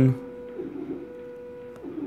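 Faint scratching of a stylus writing on a tablet's glass screen, under a faint steady hum.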